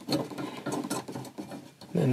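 Small metal parts clicking and scraping in quick, irregular ticks: a steel mounting plate and its threaded pull-up knob being pushed and shifted into place against a car's sheet-metal floor pan.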